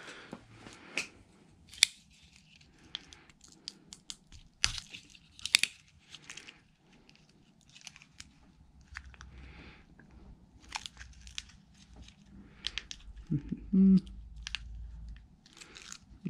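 Small plastic parts of a Hi-Capa airsoft nozzle assembly being handled and pulled apart by hand: scattered light clicks and rustles. A brief murmur of voice comes near the end.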